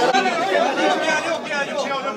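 Several people talking over one another: indistinct crowd chatter around a group of men.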